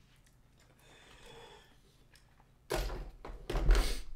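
A quiet stretch, then about two-thirds of the way in a man starts coughing hard in several loud, rough bursts after a bong hit.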